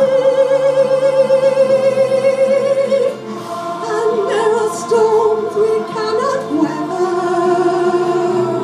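Amateur mixed choir singing, holding one long steady note for about the first three seconds, then moving on into a shifting melodic line.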